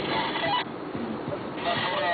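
Steady road and engine noise inside a moving car's cabin at highway speed, with a brighter hiss that cuts in and out twice.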